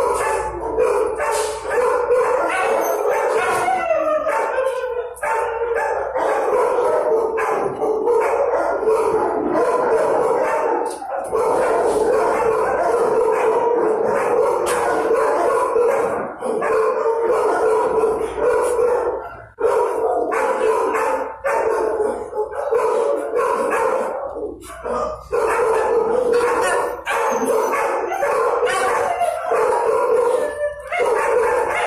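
Many shelter dogs barking and calling at once, a continuous overlapping din in a hard-walled kennel block, with only brief dips.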